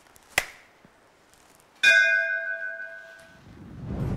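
A sharp click, then about two seconds in a single struck bell-like ding that rings and fades over about a second and a half: an edited-in comic sound effect. A low whoosh swells near the end, a transition effect.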